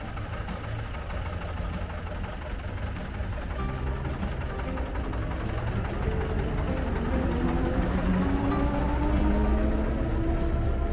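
Background music playing over the running engine of a 1929 Leyland Lion bus as it pulls away, the engine's low rumble growing louder toward the end.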